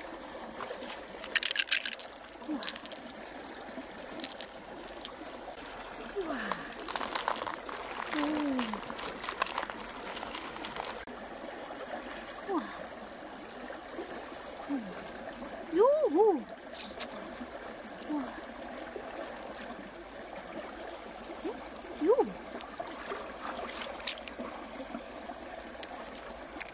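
Wet handling of an opened freshwater pearl mussel: clusters of clicks as pearls are scooped and knock together, and a few short squelchy squeaks as hands work through the flesh, over a steady trickle of water.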